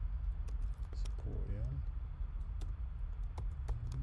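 Typing on a computer keyboard: a run of irregularly spaced key clicks as a word is typed, over a steady low hum.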